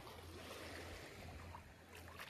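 Faint sloshing of shallow water around bare feet wading in ankle-deep water.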